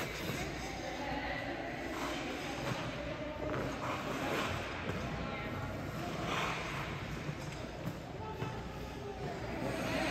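Figure skate blades gliding and scraping on rink ice, with louder scrapes about four and six seconds in, heard over the noise of the rink.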